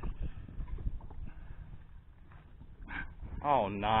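Low rumble with scattered knocks and thumps as a big catfish is handled and lifted off a boat deck, then a man's loud, drawn-out exclamation near the end.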